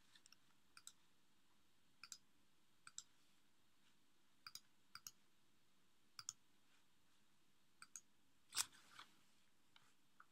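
Faint, irregular clicks of a computer mouse and keyboard, about ten in all, roughly one a second, the loudest near the end; near silence between them.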